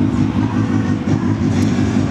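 Harley-Davidson Softail Deuce's carbureted 88-cubic-inch Twin Cam V-twin idling steadily through its exhaust. It is a clean idle with no abnormal noises.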